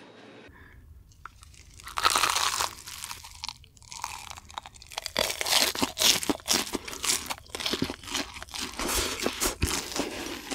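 Close-miked crunchy eating: a person biting into and chewing crispy, crumb-coated food, with a loud burst of crunching about two seconds in and a fast run of crackly crunches through the second half.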